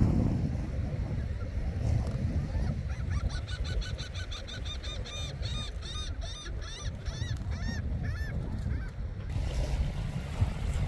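A gull calling: a run of quick, repeated rising-and-falling notes lasting about six seconds, starting about three seconds in. Steady wind rumble on the microphone runs underneath.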